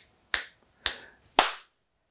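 Finger snaps picked up by a condenser microphone just switched onto 48-volt phantom power, about half a second apart: a test that the microphone is working.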